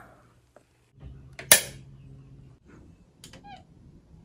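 A single sharp knock about a second and a half in, then a few faint clicks and short squeaks of fingertips rubbing on fogged glass.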